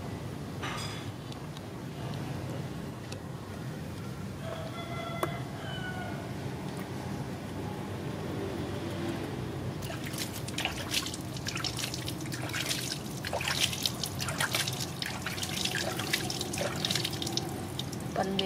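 Hand-splashed water being poured over a baby monkey during a bath, running and dripping back into a plastic basin; the splashing and dripping thickens into a busy run of small splashes from about ten seconds in.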